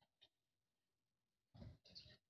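Near silence: room tone, with a faint click early on and a short, faint noise near the end.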